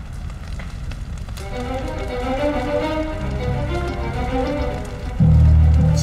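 Soundtrack music: layered, sustained notes swell in about a second and a half in over a low rumble, and a heavy low boom hits near the end.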